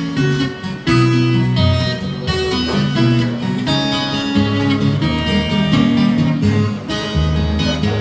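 Twelve-string acoustic guitar strummed in steady chords, the bass notes changing from chord to chord, with no singing.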